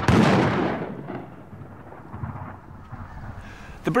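A single flintlock musket shot, its boom dying away over about a second.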